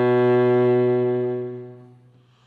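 Cello playing one long bowed note, held steady, that fades away in the last half second, closing a two-octave minor scale.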